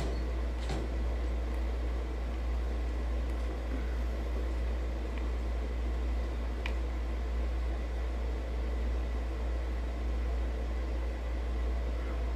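Room tone: a steady low hum under an even hiss, unchanging throughout, with a faint tick or two.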